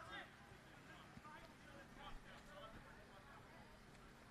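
Near silence, with faint, distant voices calling.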